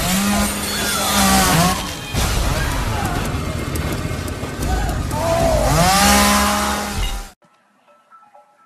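Loud, noisy music mixed with raised voices whose pitch swoops up and down, cutting off suddenly about seven seconds in.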